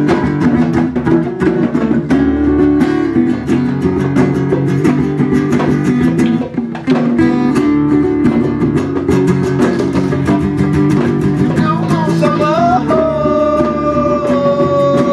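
Acoustic guitar strummed in a steady, busy rhythm. Near the end a voice comes in with a long held sung note over it.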